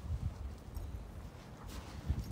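Faint, irregular footsteps on gravelly limestone drill cuttings.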